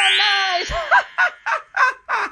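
A woman's voice holds the last word of a witch's spell, "nice!", as a rising, shimmering magic sound effect sweeps upward. From about a second in she breaks into a witch's cackle in quick bursts, about four a second.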